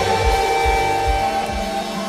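A live rock band playing: electric guitars hold sustained notes over a steady kick drum and bass beat. The low beat drops away near the end, leaving the guitars ringing.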